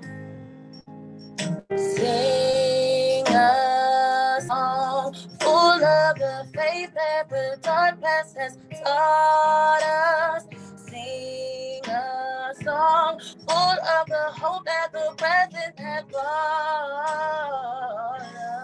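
A woman singing a slow melody in long held notes with vibrato, over guitar accompaniment; the singing comes in after a quieter second or so.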